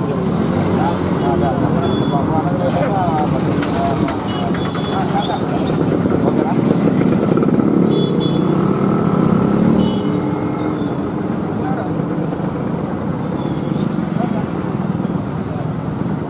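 People talking over steady street traffic noise.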